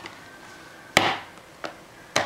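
A baby banging a small hand-held object: one loud, sharp knock about halfway through, then a lighter tap shortly after.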